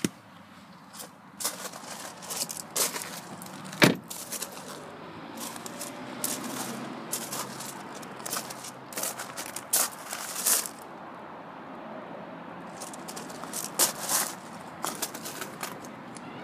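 Handling noise: irregular rustles and small clicks from paper and a hand-held recording device being moved about, with one sharp knock about four seconds in.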